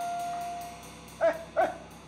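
A held note of background music fades out in the first second. Then a dog barks twice, short and high, about a third of a second apart.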